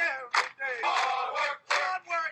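Several voices shouting together in a rapid, repeating, chant-like pattern.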